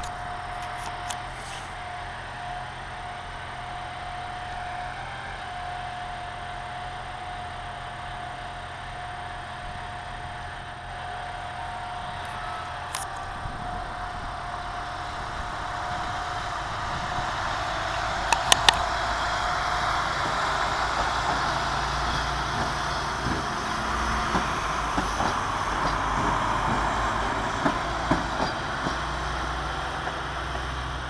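Diesel multiple unit 222M-001 idling with a steady whine, then its engines run up louder from about halfway through as it pulls away from the platform. There are a few sharp clicks a little past the middle.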